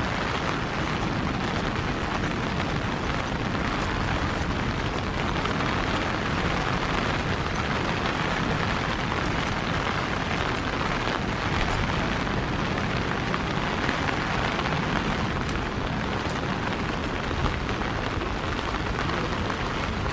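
Steady rain falling on wet stone paving and foliage, an even hiss with a constant low rumble underneath.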